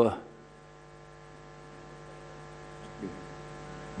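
Steady electrical mains hum, a stack of unchanging tones, picked up in the microphone feed between words. A brief faint voice sounds about three seconds in.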